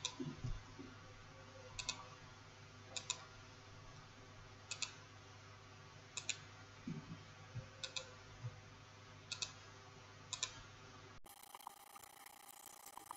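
Computer mouse button clicking faintly, each click a quick press-and-release pair, about eight clicks at uneven gaps of one to two seconds.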